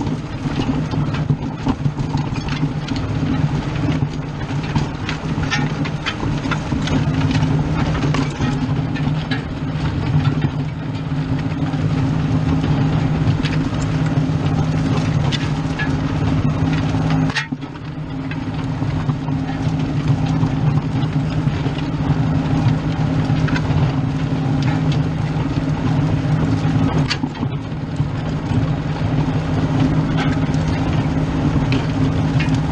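New Holland TN70 tractor's diesel engine running steadily under load as it pulls a disc harrow through weeds and corn stubble, with the clatter and rattle of the disc gangs and frame. The engine note briefly dips a little past halfway, then picks up again.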